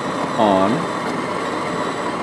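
Jura Impressa J9 superautomatic espresso machine running steadily as it starts a cappuccino.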